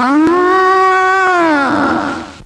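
A woman's voice holding one long loud note for nearly two seconds: the pitch rises at the start, holds steady, then slides down and fades near the end.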